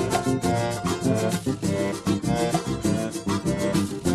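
Instrumental break of a gaúcho vaneira: an accordion playing held melody notes over a steady, even beat of bass and chords.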